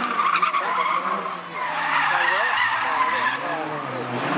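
A drifting car's tyres screeching in a long, wavering squeal as it slides sideways, with the engine running hard under it.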